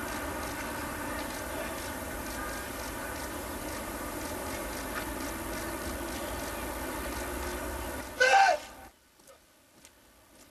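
Sirens and horns sounding together in a steady, many-toned chord, the kind of mass sounding that marks a nationwide mourning observance for earthquake victims. A louder short blast with a falling pitch comes near the end, then the sound cuts off abruptly to near quiet.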